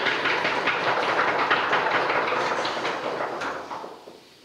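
Audience applause: a dense patter of many hands clapping that fades out near the end.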